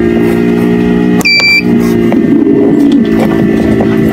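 Egg incubator running with a steady electrical hum, and one short electronic beep about a second in.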